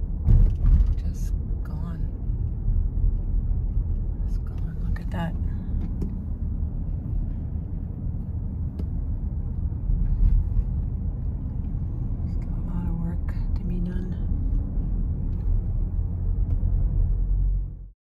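Steady low road and engine rumble heard inside the cabin of a moving car, with a few brief murmurs of voices. The sound cuts off abruptly near the end.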